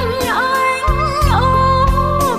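A Vietnamese revolutionary song: a voice holding long sung notes with vibrato over a band accompaniment with a bass line and drum strikes.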